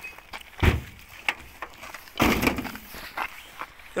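Knocks and thumps on an old Peugeot car's metal bodywork as its doors are pushed shut and the body is handled: one dull thump about half a second in, a longer knock with a rattle just after two seconds, and small clicks between.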